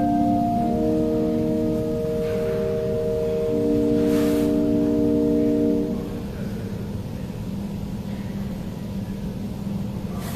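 Organ holding long, steady chords that end about six seconds in, leaving a steady low hum.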